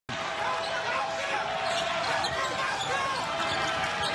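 Live sound of a basketball game in an arena: the ball being dribbled on the hardwood court, short squeaks scattered through and a steady murmur of crowd voices.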